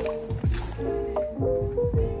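Background music: a beat with held melody notes over deep bass hits that drop in pitch.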